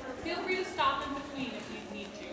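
A woman's voice speaking briefly, the words not made out.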